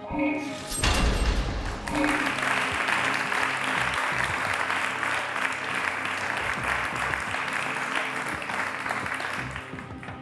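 A loud musical hit about a second in, then sustained studio-audience applause over steady game-show background music.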